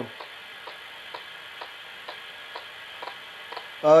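Faint, even ticking about twice a second over a steady hiss.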